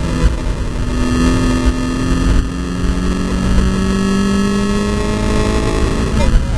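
Volkswagen Scirocco Cup race car's engine pulling under load, its pitch rising slowly as the car accelerates, heard from inside the cabin under heavy road and wind rumble.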